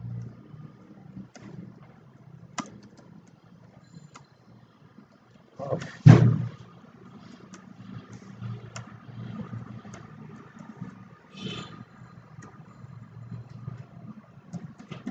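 Light, scattered keyboard clicks from text being typed, over a steady low room rumble. A single loud thump about six seconds in, and a softer rustle-like noise near the end.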